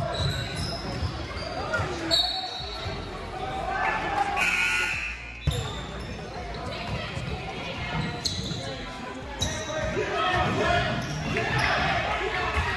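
A basketball bouncing on a hardwood gym floor during live play, with voices of players and spectators talking and calling out.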